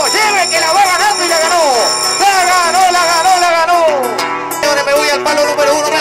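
A man's voice singing long, drawn-out wavering phrases over guitar accompaniment, in the manner of a payador at a jineteada.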